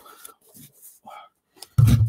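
Faint, scattered rustling and scraping of a cardboard Funko Pop box being handled, with a small click shortly before the end.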